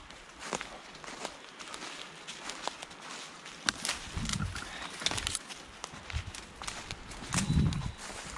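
Footsteps of a person and a dog crunching through dry fallen leaves and twigs, an irregular run of crackles and snaps, with a couple of low thuds about four seconds in and near the end.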